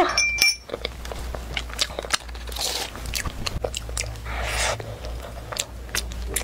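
Close-miked chewing of a warm flaky pastry with a soft mochi filling: a run of bites and short mouth clicks.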